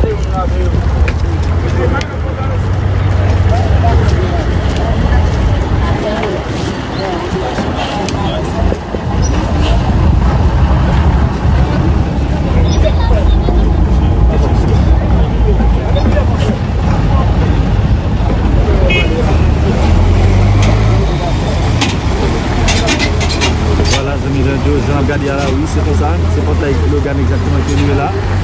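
Busy street sounds: vehicle engines running with a steady low rumble, traffic noise and the voices of people around.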